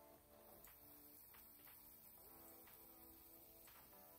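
Faint background music of plucked string notes, very quiet.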